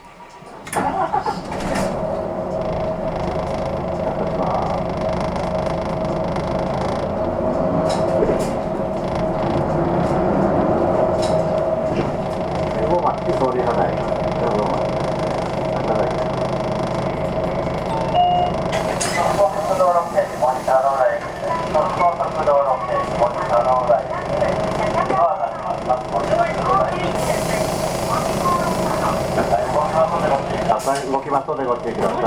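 Hino Blue Ribbon II city bus heard from inside: the engine starts suddenly about a second in, then the bus pulls away and runs on through traffic with a steady engine tone.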